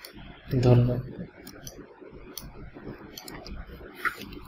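A brief spoken sound about half a second in, then a few scattered light clicks of a computer mouse as layers are transformed in Photoshop.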